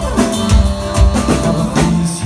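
Live band playing an instrumental passage on drum kit, bass, acoustic guitar and accordion, with drum beats about twice a second. There is a short downward pitch slide at the very start.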